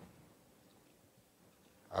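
Near silence: faint room tone, with the last of a man's voice dying away in the first moments.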